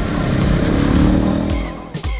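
Motorcycle engine revving, its pitch rising over about a second and a half before fading, laid over background music.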